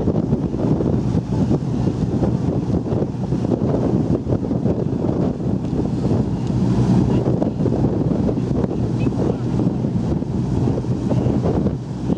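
Heavy wind buffeting the microphone on a moving boat at sea, over a steady low hum of the boat's engine and the wash of water.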